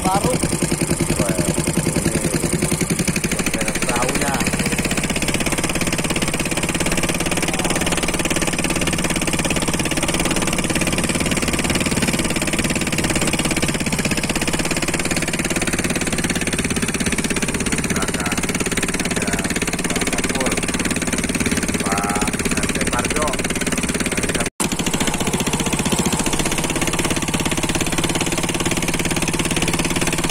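Small fishing boat's engine running steadily under way, one even low note with a fast regular pulse. Brief voices break in now and then.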